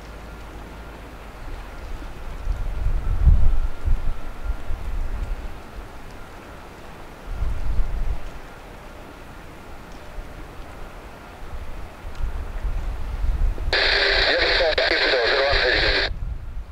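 Wind buffeting the microphone in gusts over a faint steady whine. Near the end, an air traffic control radio transmission cuts in loudly through a scanner speaker.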